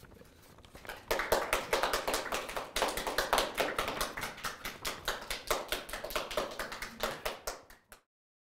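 Small audience applauding, starting about a second in and tapering off near the end.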